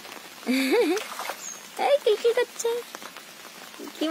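Rain falling steadily onto pond water, a continuous hiss, with a voice speaking briefly twice over it.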